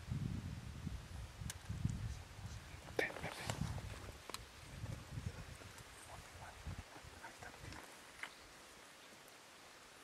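Faint, muffled low voices in irregular patches, with a few sharp clicks and light rustles about one to four seconds in; the sounds die away about eight seconds in.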